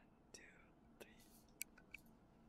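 Near silence: faint room tone with a few soft clicks and two brief, faint squeaks near the start.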